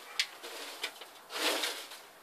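Newspaper crinkling and rustling under two northern blue-tongue skinks as they shift about on it: a few short crackles, then a longer rustle about one and a half seconds in.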